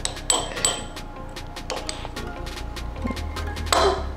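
Background music with a steady beat, and a steel spoon clinking twice against a glass dessert goblet about half a second in as ice cream is scooped into it.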